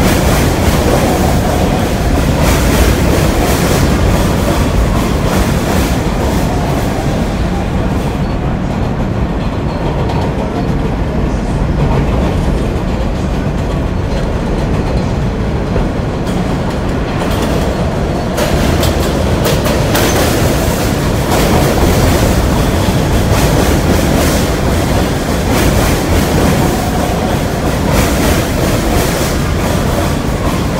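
New York City subway F train running past the platform: a steady loud noise of steel wheels on the rails. The high hiss eases off for a stretch around a third of the way in, then comes back strong from just past halfway as the train comes alongside.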